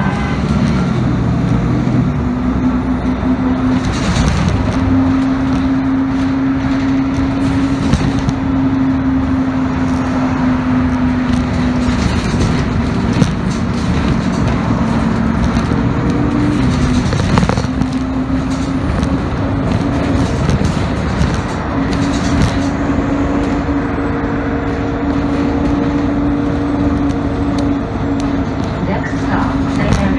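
City transit bus driving, heard from inside the cabin: continuous engine and road noise with a steady drivetrain whine that drops away and returns several times as the bus changes speed.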